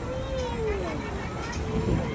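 A child's high voice in long, wordless gliding calls, the pitch rising and falling, over a steady low rumbling noise.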